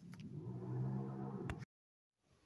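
A low, steady droning hum lasting about a second and a half. It ends in a click as the recording cuts off into silence.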